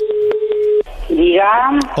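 Telephone ringback tone heard over the phone line: one steady tone at a single pitch that stops a little under a second in as the call is picked up, followed by a voice on the line.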